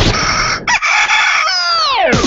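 A rooster crowing, a recorded sound effect heard on the broadcast. Its long final note is held, then falls steeply in pitch near the end.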